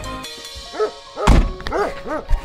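A Volkswagen car door shut with a heavy thunk a little past halfway, while a dog barks a few short times.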